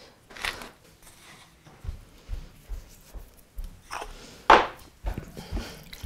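Wooden pepper mill grinding over a stainless steel bowl, then a metal spoon stirring thick meat-and-vegetable filling in the bowl, with dull knocks and a louder scrape about four and a half seconds in.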